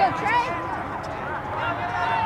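Several people shouting and calling out at once, in short, overlapping calls, the voices of players and spectators at a soccer game.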